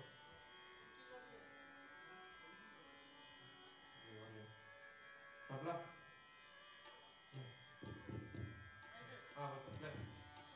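Near silence over a steady electrical buzz from the stage amplifiers and sound system, with a few brief faint voices in the middle and near the end.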